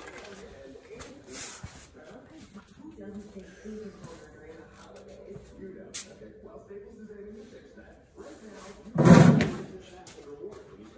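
Faint, indistinct voices with small handling noises of tools and hub parts on a concrete shop floor, and one loud, short knock a little after nine seconds in.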